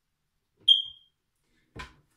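A whiteboard marker squeaks once against the board, a short high-pitched squeak that fades quickly. A soft rustle of movement follows near the end.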